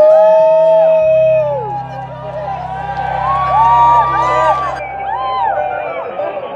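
Live rock band playing in a club, with a low bass note held under a gliding melody line and keyboards.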